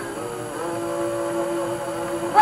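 Old live recording of gospel music, with one long steady held note starting about half a second in.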